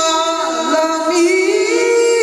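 Male qari reciting the Quran in melodic tilawat style into a microphone: an ornamented vocal line that dips low about half a second in, then climbs to a long held note.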